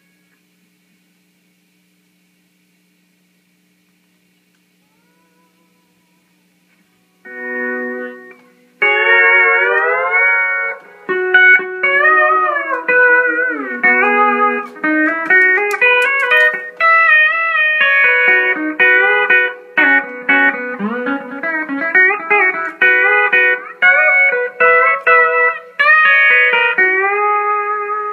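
Pedal steel guitar played solo: after about seven seconds of near silence a chord rings out, then from about nine seconds a continuous melodic line with notes gliding up and down between pitches as the bar slides.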